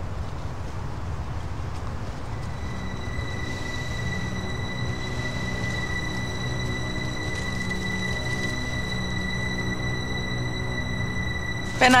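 Tense, suspenseful background score: a steady low drone, joined about two seconds in by a single high note that is held to the end.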